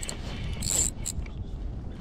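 Spinning fishing reel being wound in: a short rasping whirr from the reel about half a second in, over a low steady rumble.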